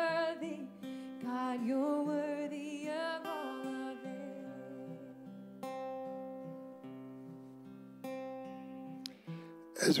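Worship song ending: a woman sings a held line with vibrato over acoustic guitar for the first few seconds. The voice then drops out, leaving strummed acoustic guitar chords ringing, with a few fresh strums about a second apart.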